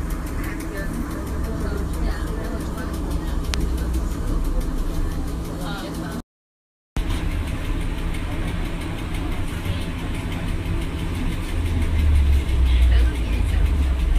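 Cabin noise of an NAW trolleybus on the move: a steady low rumble with a constant electrical hum, the rumble growing louder near the end. The sound cuts out completely for under a second about six seconds in.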